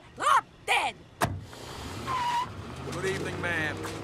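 A taxi door shuts with a sharp thud about a second in, then the cab drives off with engine and tyre noise. Short vocal sounds come before the door.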